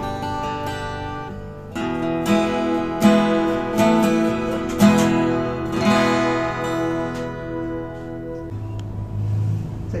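Solid-wood steel-string acoustic guitar strummed: several chords struck between about two and six seconds in and left to ring, the strings going quiet about a second and a half before the end.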